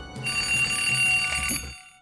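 Desk alarm clock's bell ringing loudly. It is cut off with a click about a second and a half in as its button is pressed down.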